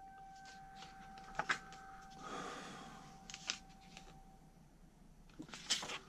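Pages of a glossy softcover book being handled and turned: a soft paper rustle about two seconds in, with a few light taps and ticks around it.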